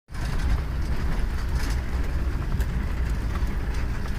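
Steady low rumble of a vehicle driving, engine and road noise heard from inside the cab with the side window open, with a few faint rattles.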